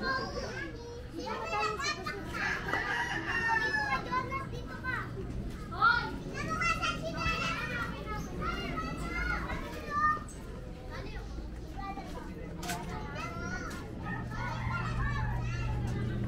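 Children's voices shouting and chattering as they play, busy in the first ten seconds and thinning out after.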